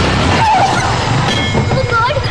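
Motorcycle braking hard and skidding on its tyres, with its engine running.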